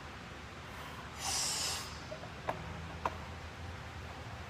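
A weightlifter takes one sharp, hissing breath a bit over a second in while braced over the barbell before a deadlift pull. Two short clicks follow.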